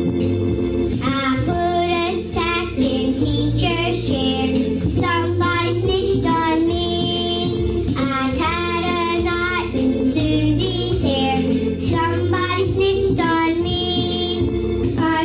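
A young girl singing a song over instrumental backing music, her voice holding and bending long notes.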